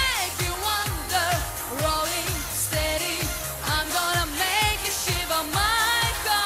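A woman singing a pop song into a handheld microphone over backing music with a steady drum beat.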